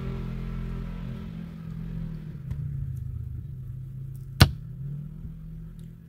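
Engine of a side-by-side off-road vehicle passing on a nearby trail: a low, steady drone that slowly fades away. A single sharp click comes about four and a half seconds in.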